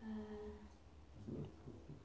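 A drawn-out hesitant "uhh" held on one pitch for under a second, followed about a second and a half in by a brief, fainter murmur.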